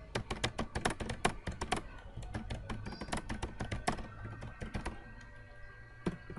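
Typing on a computer keyboard: a fast run of keystrokes, about eight a second, that thins out and stops about five seconds in.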